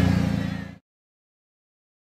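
A vehicle engine idling steadily, fading out within the first second, followed by complete silence.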